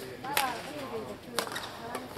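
Two sharp racket strikes on a shuttlecock about a second apart during a badminton rally, the first the louder.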